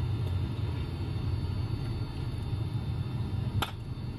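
Steady low background rumble, with a single sharp click near the end as a metal hand trowel is picked up.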